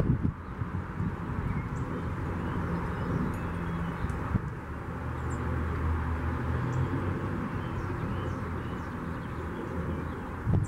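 Outdoor ambience: a steady low rumble, with faint, brief high-pitched bird chirps every second or two and a couple of sharp clicks.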